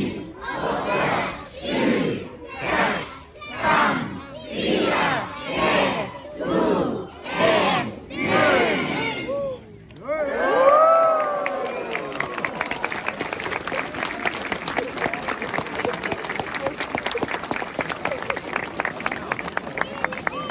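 Crowd chanting a countdown aloud in Norwegian, about one number a second, then cheering as it reaches zero, followed by sustained applause.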